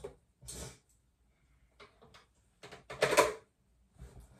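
Makeup tools being picked through and handled: a brief rustle, then a quick run of clicks and knocks, loudest about three seconds in, as a brush is chosen.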